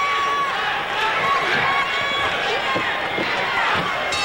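Crowd of spectators shouting and yelling, many voices overlapping.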